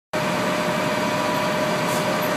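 Flatbed tow truck's engine running steadily, with a steady whine over it.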